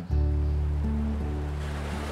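Background music of sustained low notes over the steady wash of ocean surf breaking on rocks.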